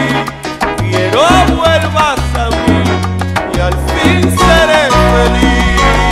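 Salsa music with a bass line stepping between held notes under dense percussion and gliding melody lines.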